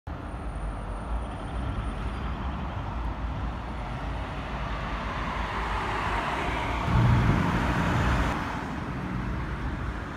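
Street traffic at a city intersection: a steady rumble of passing vehicles, swelling to its loudest as a vehicle passes close about seven seconds in.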